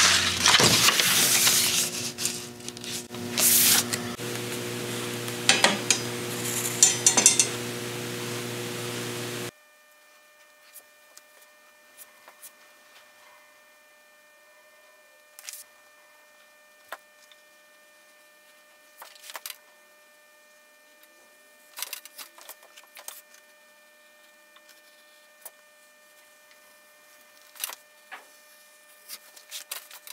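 A hide of chap leather being handled, flopped and slid across a cutting table, with rustling and clattering over a steady low hum. About nine seconds in the sound drops abruptly to a faint background of scattered soft clicks and rustles as the leather and pattern are laid out.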